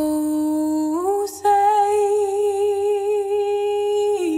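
A solo female voice singing unaccompanied: one long held note that steps up about a second in, breaks off briefly, then is held with vibrato and slips down at the very end.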